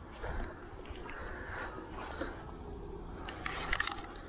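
Baitcasting-style fishing reel being cranked fast on a crankbait retrieve, with a quick run of sharp clicks near the end.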